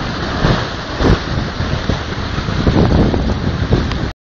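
Wind buffeting the microphone over a steady wash of sea surf, with irregular low gusty thumps that come thickest in the second half.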